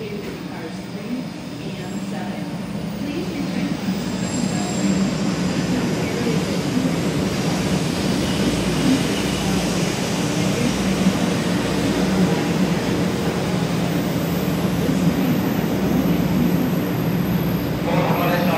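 A 500 series Hello Kitty Shinkansen running in alongside the platform. Its running noise grows louder over the first five seconds or so, then holds steady as the cars glide past.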